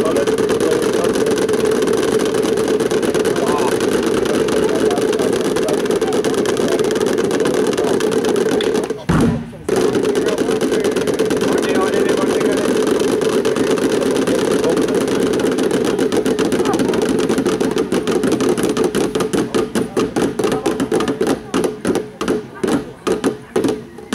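Several drummers playing a fast, continuous roll with sticks on plastic barrels topped with plastic tubs. The roll stops briefly with a single low thud about nine seconds in, then resumes, and over the last few seconds it breaks up into separate, accented beats.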